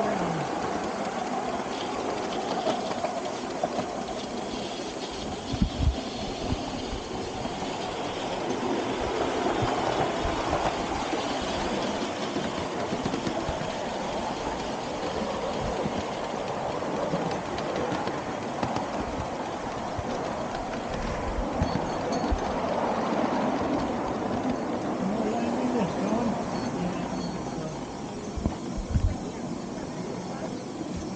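Miniature live-steam locomotive and its riding car running along the track, heard from the car behind the engine: a steady rolling rumble of wheels on rails, with a couple of sharp knocks about five seconds in and again near the end.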